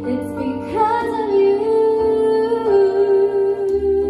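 A woman singing a slow ballad into a microphone, accompanied by sustained chords on an electronic keyboard. About a second in she holds one long note with a slight waver.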